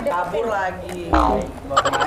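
Toddlers' voices babbling, then just after a second in a loud high cry that falls steeply in pitch, over a low thump.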